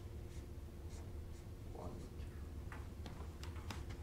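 Dry-erase marker writing on a whiteboard: a run of short, irregular strokes and scratches as letters and figures are drawn.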